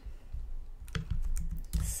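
Typing on a computer keyboard: a few scattered keystrokes heard as short clicks with soft low thumps.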